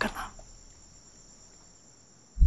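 A brief voice-like sound right at the start, then a quiet stretch with a faint, steady, high-pitched insect-like tone held throughout.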